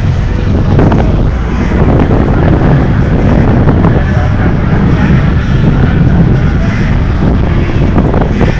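Wind buffeting the microphone: a loud, steady low rumble with street noise beneath it.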